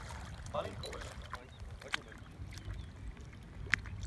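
Steady low wind rumble on the microphone over open water, with faint voices about half a second in and a brief sharp high squeak near the end.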